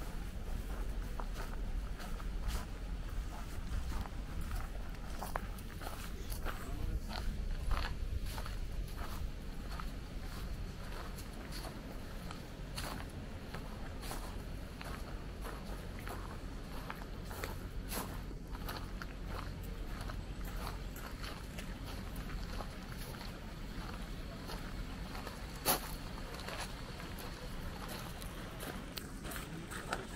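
Footsteps on a gravel path with a steady low rumble underneath and faint distant voices; one sharper click stands out near the end.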